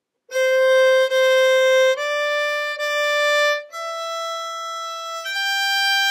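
Solo violin playing a slow, simple phrase of six separately bowed notes, C, C, D, D, E, G, each held about a second and stepping upward in pitch. The E is softer, and the G is held at the end.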